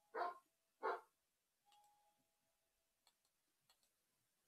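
A dog barks twice, short barks about a second apart, followed by a faint, thin, steady tone lasting about a second and a half.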